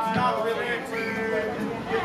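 Indistinct talking and chatter from people on stage and in the crowd, off-microphone, during a break between songs.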